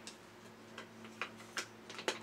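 Faint, light plastic clicks and taps, about five in two seconds, as a battery cover is fitted onto the back of a plastic toy robot.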